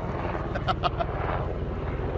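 Helicopter passing overhead: a steady, rapidly pulsing low rotor rumble.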